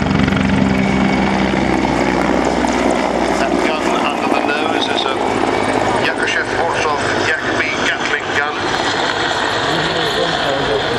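Mil Mi-24 Hind attack helicopter flying a display pass, its main rotor beating and its twin Isotov TV3-117 turboshaft engines running. The rotor beat is strong at first and fades after about three seconds as the helicopter moves off.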